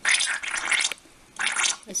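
Two breaths blown by mouth through a straw into the ink holes of a soaked Canon Pixma MX922 printhead. The first lasts about a second and the second, shorter one comes about a second and a half in. The blowing forces clogged magenta ink out of the nozzles.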